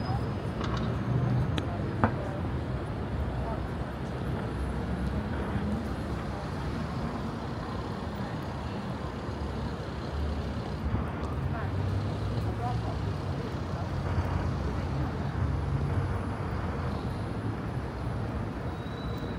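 City street ambience: road traffic running steadily along the adjacent road, a low engine rumble that swells and fades as vehicles pass, with a few short clicks in the first couple of seconds.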